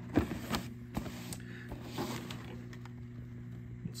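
Soft rustling and a few light taps from handling cardboard boxes of vintage Christmas light strings and their bulbs. A steady low hum runs underneath.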